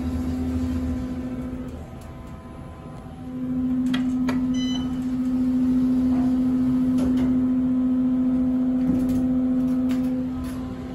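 Otis hydraulic passenger elevator in operation, heard from inside the cab: a steady low hum that fades out for about a second and a half around two seconds in, then comes back and holds. A few light clicks and a brief electronic beep come near the middle.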